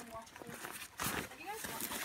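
Faint, brief voices in the background, with a single knock about a second in.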